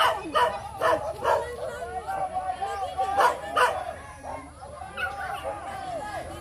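A dog barking, short barks coming in quick pairs about half a second apart, with people's voices talking underneath.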